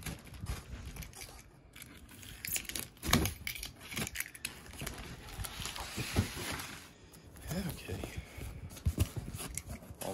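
Cardboard boxes scraping and knocking against each other, with packing paper crinkling, as a guitar's carton is worked out of its shipping box. There are sharp knocks near 3, 6 and 9 seconds and a longer rustling scrape in the middle.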